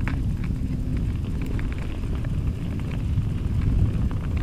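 Mountain bike riding over a dirt and gravel trail: steady low wind and tyre noise on the camera's microphone, with frequent small clicks and rattles from the bike jolting over bumps.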